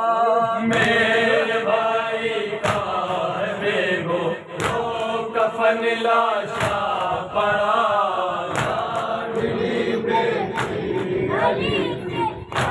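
A group of men chanting a noha together, with loud hand-on-chest matam strikes landing in rhythm about every two seconds.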